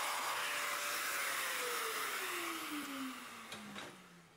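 Festool Domino joiner running with a steady rushing whine, then switched off about a second and a half in, its motor pitch falling steadily as it winds down and fades.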